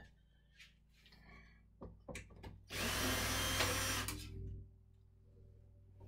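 Cordless drill-driver spinning for about a second and a half, around three seconds in, backing out a short screw. A few light clicks and knocks come before it.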